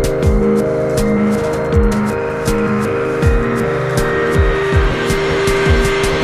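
Electronic soundtrack music with a steady kick-drum beat about twice a second, ticking hi-hats and sustained synth chords over a moving bass line.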